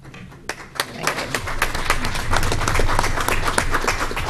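A small group applauding: a few scattered claps at first, building within about a second into steady clapping.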